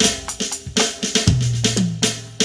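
Converted acoustic drum kit played through its trigger-driven drum module: a quick run of kick, snare and cymbal hits. In the second half come tom strokes that ring out at a steady pitch.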